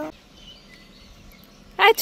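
Quiet outdoor background with a few faint, short bird chirps; a woman's voice cuts in briefly near the end.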